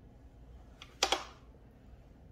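Two quick light clicks close together about a second in, with a faint tap just before: small hard nail-supply objects, such as a gel polish bottle and its brush cap, knocking on the desk while being handled.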